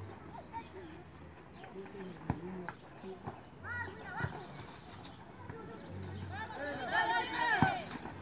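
High-pitched shouts from players and onlookers at a youth football match, in two bursts about four seconds in and near the end, over open-air background noise. A few sharp thumps fall between and within the shouts.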